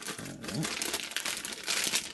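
A thin clear plastic bag crinkling continuously as hands slide a netbook out of it: a dense crackle of many small rustles.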